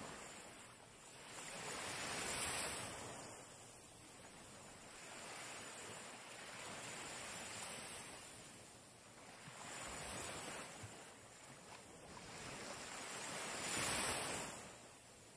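Small waves washing onto a sandy shore: a soft rushing that swells and fades every few seconds.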